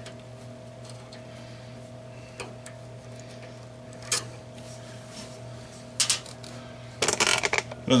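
Small metal clicks and knocks from hands removing a screw from a glass CO2 laser tube's mounting bracket. A few single clicks are spread out, and a quick run of rattling knocks comes near the end, all over a steady low hum.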